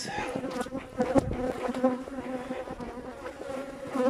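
Many honeybees buzzing around the hives at close range, a steady, wavering hum. Two brief knocks stand out about a second in.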